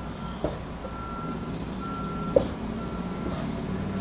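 Electronic beeping: a single steady tone sounding for about half a second, roughly once a second, like a vehicle's reversing alarm. A couple of short taps, from a marker on the whiteboard, fall in between.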